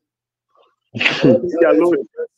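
Near silence for about a second, then a man's voice saying "yeah", starting with a sharp burst of breath.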